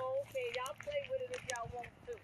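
People talking, fairly quiet, with a few light clicks.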